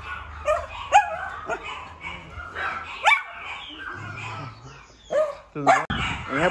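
Small dogs barking: several short, sharp barks spread over a few seconds, with a louder cluster near the end.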